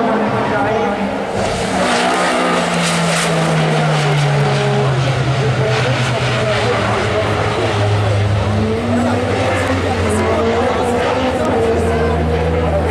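Super 1600 rallycross car's engine running, its note falling slowly and steadily in pitch as the car slows, with spectators' voices underneath.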